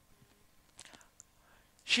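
Near silence with a few faint short clicks about a second in, then a man starts speaking near the end.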